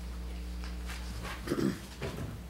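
Meeting-room tone with a steady low electrical hum, and one brief low sound about one and a half seconds in.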